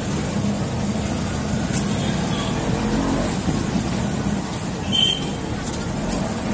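Steady low rumble of motor-vehicle traffic, holding an even level throughout, with faint voices in the background.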